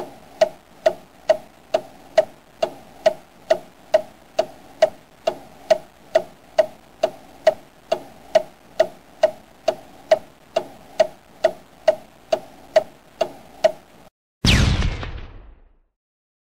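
Ticking-clock sound effect: a steady, even tick a bit over twice a second. It stops about fourteen seconds in, followed by one loud hit that fades away over about a second and a half.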